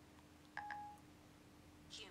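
A short electronic chime from the iPod Touch 5th Gen's speaker about half a second in: Siri's tone that marks the end of the spoken request, just before Siri answers.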